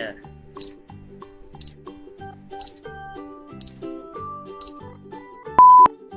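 Countdown timer sound effect: five sharp ticks one second apart over light background music, ending in a short, loud single-pitched beep near the end.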